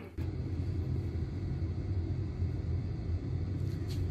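Oil-fired boiler's burner running with a steady low hum.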